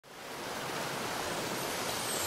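Waterfall water rushing in a steady, even hiss that fades in from silence over the first half second.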